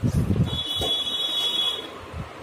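A single high-pitched electronic beep, held steady for about a second and a half, starting about half a second in, after a brief low rumble of handling noise.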